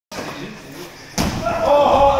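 A wrestler thrown down onto a padded wrestling mat, landing with a heavy thud about a second in, followed by a man's loud, drawn-out shout.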